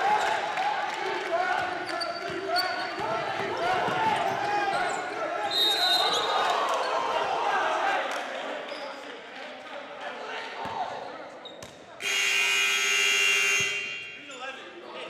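Gymnasium crowd and players cheering and shouting, with a short referee's whistle about six seconds in. Near the end the scoreboard horn sounds, one steady blast of about two seconds.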